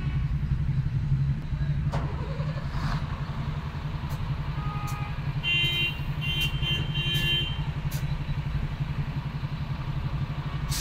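Congested street traffic: a steady low rumble of idling and creeping engines, with a few short horn beeps about halfway through.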